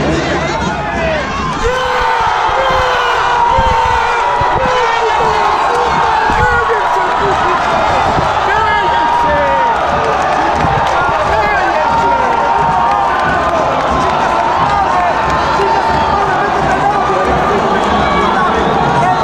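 Football stadium crowd shouting and chanting, many voices at once, with some long held calls over the din.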